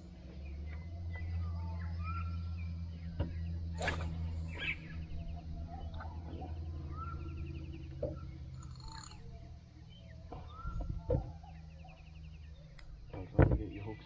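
Birds calling by the river, short rising whistles repeated every couple of seconds over faint trills, above a steady low hum that fades out about two-thirds of the way in. Near the end come a few sharp knocks of fishing gear being handled on the boat's deck.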